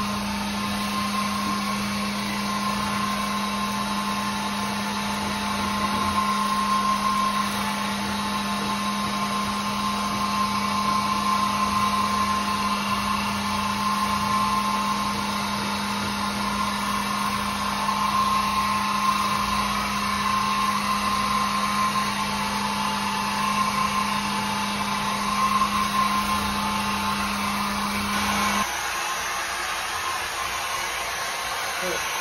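Oreck orbital floor machine running steadily as it scrubs wet, soapy ceramic tile, a continuous motor drone with a wavering higher whine. The low part of the hum drops out near the end.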